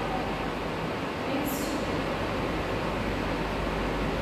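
Steady room noise, an even hiss with a low hum underneath, in a pause between spoken sentences, with a brief high hiss about one and a half seconds in.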